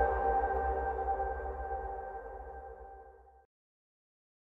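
Tail of a cinematic title sting: a low rumble under several held, ringing tones, fading steadily and cutting off to silence about three and a half seconds in.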